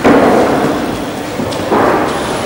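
Loud rumbling noise of the camera microphone being buffeted. It starts abruptly and swells briefly near the end.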